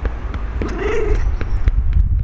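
Large long-haired domestic cat giving one wavering, trembling call a little past half a second in, over a run of repeated light pats on its rump that come through as low thumps. The trembling voice is the cat's response to being patted on the rump, which the owner takes for pleasure.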